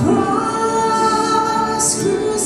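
Worship singers, women's voices among them, singing a slow hymn together and holding long notes, with a sung 's' near the end.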